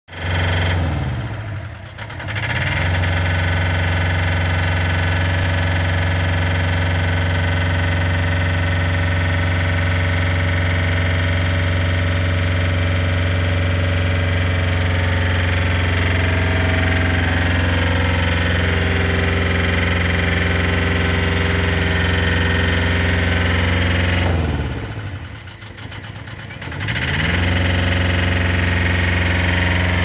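Diesel engine of a scissor lift running steadily at a fast, even speed. Twice, about two seconds in and again near twenty-five seconds, the engine note sags in pitch and loudness and then climbs back.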